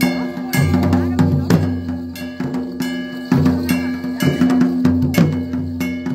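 Traditional Himachali deity-procession band playing: drums beaten in a driving, uneven rhythm with loud strokes every second or so, ringing metal percussion, and a steady held note underneath.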